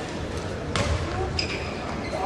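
Badminton hall ambience: a murmur of voices with two sharp knocks, about three-quarters of a second and a second and a half in, the second with a brief high squeak, echoing in the large hall.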